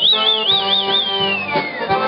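A high whistle that warbles up and down about five times, then slides steadily down in pitch near the end, over a Cajun band with Cajun accordion playing.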